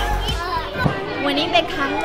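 Young children chattering and playing, with background music that stops under a second in, leaving their high voices.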